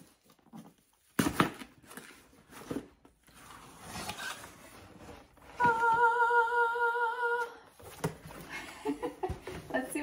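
A cardboard subscription box being opened: the seal gives with one sharp sound about a second in, then light rustling of cardboard and packaging. Midway a woman lets out a long, held excited vocal note at a steady high pitch for about two seconds, followed by more rustling and handling of the box.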